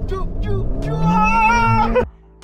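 Ferrari Roma Spider's 3.9-litre twin-turbo V8 accelerating, heard from inside the cabin, its note rising steadily as the revs climb. The sound cuts off abruptly at the end.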